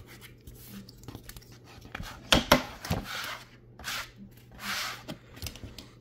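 A scratch-off lottery ticket being scratched with a plastic scratcher: a series of short scraping strokes, with a couple of sharp clicks about two and a half seconds in.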